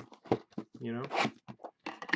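Packaging of a trading-card box being ripped open: a few short, quick rasping tears near the start and again near the end, with a few words spoken between them.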